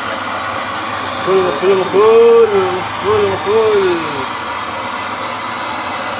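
A gas burner runs with a steady rushing noise under a flat steel wok that is being heated to season it. A voice calls out a few drawn-out sounds between about one and four seconds in.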